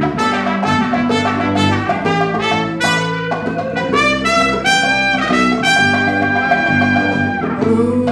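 Trumpet solo over electric bass and electric guitar in a live jazzy band: a run of short, separate notes, then longer held notes from about halfway through.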